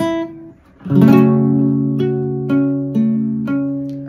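Nylon-string classical guitar being played: a note rings out and fades, then about a second in a chord is struck and left ringing while single notes are plucked over it, about two a second.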